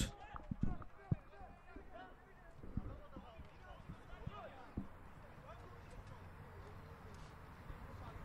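Faint, distant voices of players calling out across the pitch, with a handful of short, dull thumps of a football being kicked or bouncing, the sharpest about a second in.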